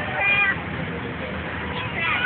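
A brief high-pitched squeal from a person in the first half-second, then a steady background of outdoor crowd noise.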